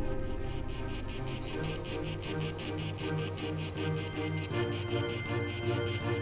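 Crickets chirping in an even, rapid pulse of about five or six chirps a second, over soft background music with repeated notes.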